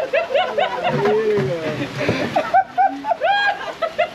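Several men laughing loudly and whooping in short repeated bursts, over the steady hiss of heavy rain.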